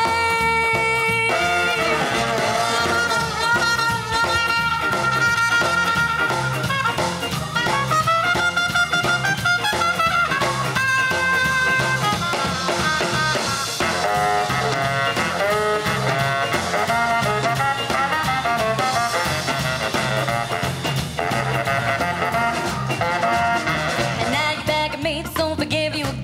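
Ska-jazz band playing live, with a horn section over drums in a steady swinging groove.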